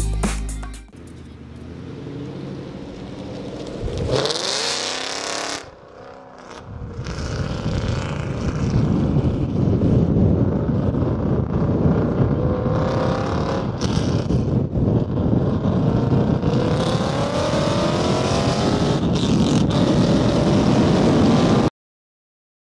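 Car engine accelerating, with steady road and wind noise, heard from a camera mounted on a moving car. A short rising rev comes about four seconds in. The louder run then climbs in pitch several times before cutting off suddenly near the end.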